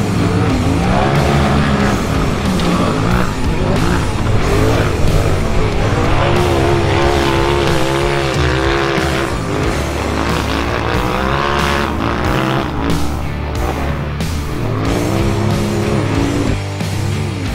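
Polaris RZR side-by-side race cars' engines revving hard, their pitch climbing and dropping again every second or two as they accelerate and back off through the course, mixed with loud rock music.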